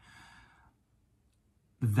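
A man's short, faint breath close to a microphone, then about a second of near silence before his speech starts again near the end.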